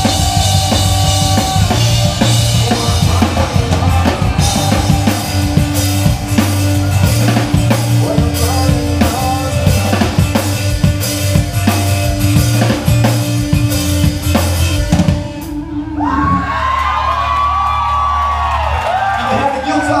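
A rock band playing live, with a drum kit prominent: bass drum, snare and cymbals driving under bass and guitar. Around fifteen seconds in the full band drops away. Sustained low notes and wavering higher guitar tones then ring on as the song closes.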